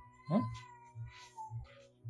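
Dramatic background score: a held high tone over a soft low pulse about twice a second. About a third of a second in, a voice gives a short, sharply rising "Hmm?".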